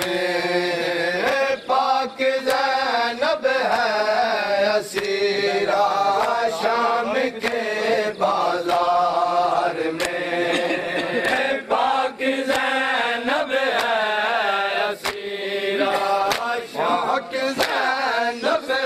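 A nauha, a Shia mourning lament, chanted in a steady melodic line, with sharp slaps of matam (hand-on-chest beating) keeping time about once a second.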